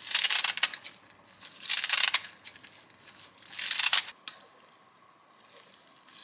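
A crisp sheet of dried roasted seaweed being cut into strips with a knife: three short crackling cuts, about two seconds apart.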